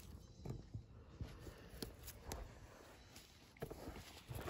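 Faint handling sounds: a handful of short, scattered clicks and light rustling at irregular intervals.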